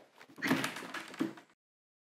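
Glass-paned front door being unlatched and pulled open, a noisy stretch lasting about a second with a couple of sharper knocks in it.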